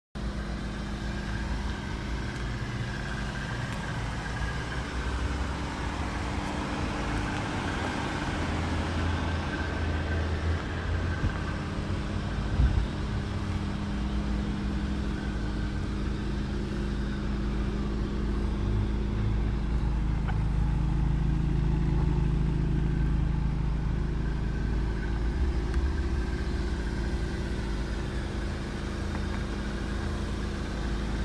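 Volkswagen Golf R's turbocharged four-cylinder engine idling steadily, a constant low hum, with a single sharp knock about twelve seconds in.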